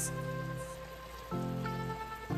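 Shrimp boiling hard in a pan of seasoned liquid, a steady bubbling hiss. Background music plays over it, holding sustained chords that change a little past halfway.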